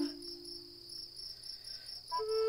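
Crickets chirping in a steady, evenly pulsed rhythm, with the tail of a low flute note fading out at the start.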